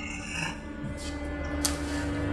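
Three short rasping scrapes over a low, sustained drone, the last scrape the loudest.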